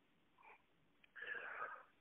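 Near silence, then a faint breath drawn in during the second half, just before speech resumes.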